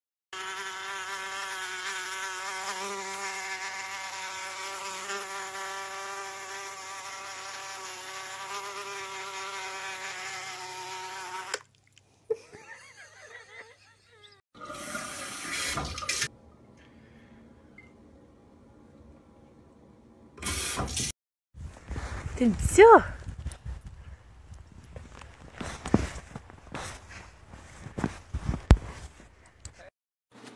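Buzzing fly sound from a smartphone cat game, steady for about eleven seconds, then cut off. A few seconds later comes a short gush of running water from a bidet tap, followed by scattered knocks and a brief rising cry.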